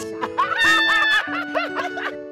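Women laughing together in a run of short repeated bursts, over background music with long held notes.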